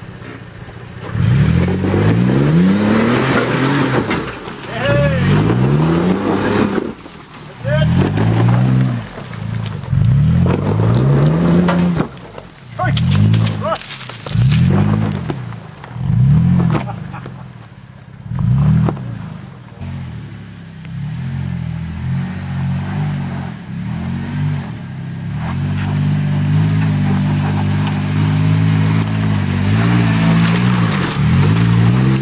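Toyota FJ Cruiser's 4.0-litre V6 revving hard in repeated bursts, rising and falling about every one to two seconds, as it climbs a steep rocky track under load. Near the end the engine holds a steadier, sustained rev.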